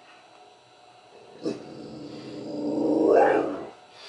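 A young Rottweiler giving one long, drawn-out vocal grumble that swells in loudness to a peak about three seconds in and then stops, her way of demanding that the paused TV start playing again.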